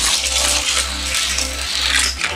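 Hot Wheels die-cast car running along plastic track through a triple loop, a steady rushing rattle of small wheels on plastic that eases off near the end.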